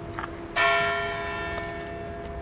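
A bell struck once about half a second in, ringing with several clear tones and slowly dying away, while the hum of an earlier stroke is still fading beneath it.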